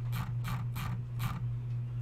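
A quick series of light mechanical clicks, about three a second, from a computer mouse being clicked and its scroll wheel turned, over a steady low hum.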